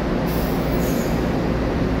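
Taiwan Railways EMU900 electric multiple unit at the platform: a steady loud hum and running noise, with a brief high hiss from about a third of a second to just past a second in.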